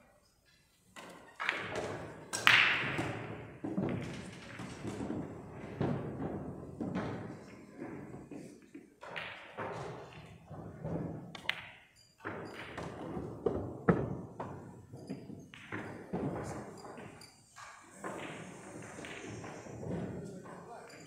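A pool cue strikes the cue ball and the balls click together, with scattered thuds and knocks in a busy pool hall. Music and voices run underneath.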